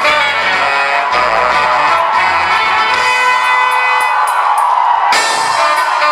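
Live cumbia band's horn section of trumpet and saxophones playing held chords through the stage PA. The drums and bass drop out about a second in and return with a crash about five seconds in.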